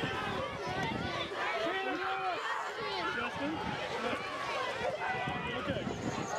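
A crowd of children and adults talking and calling over one another, with children crying among them, and wind rumbling on the microphone.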